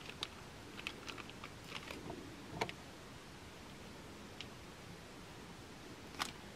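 Faint, light clicks and rustles of hands handling craft pieces on a tabletop while pressing a glued floral wire onto a foam cutout, several in the first few seconds, the loudest a little past halfway through them, then nearly still.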